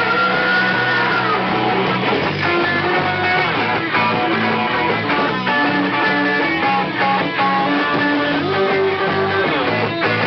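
A post-punk band playing live: strummed electric guitars over a bass line, loud and steady.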